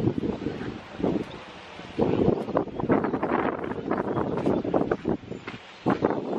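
Wind gusting on the microphone in irregular, rumbling surges, loudest from about two seconds in.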